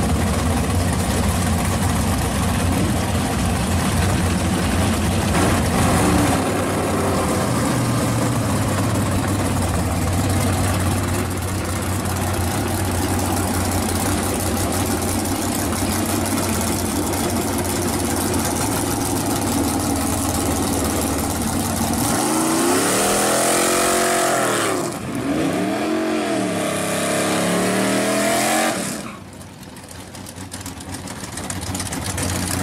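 Drag cars' V8 engines idling at the starting line, then two hard revs that climb and fall, about three seconds each, as a burnout is done to heat the tyres before a launch. The engine sound drops away sharply near the end.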